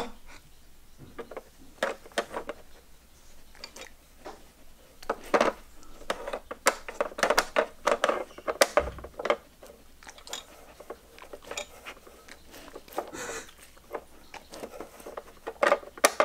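Plastic pieces of a Trixie dog strategy puzzle board clicking and knocking irregularly as a dog noses and works its slider and knob, busiest through the middle of the stretch.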